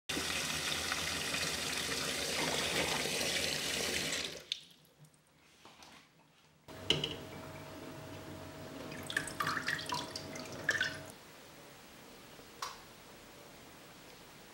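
Kitchen tap running in a steady stream onto cherries in a stainless steel sink, stopping about four and a half seconds in. After a short lull come quieter light clicks and knocks of cherries handled in a metal colander, over a faint steady hum.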